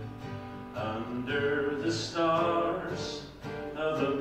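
Acoustic guitar strummed as country-song accompaniment, with a man singing held notes over it.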